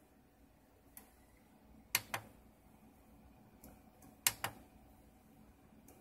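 Clicks of buttons pressed on a solar inverter's front panel as its display steps through its screens. There is a faint tick about a second in, then two sharp double clicks, press and release, about two seconds apart.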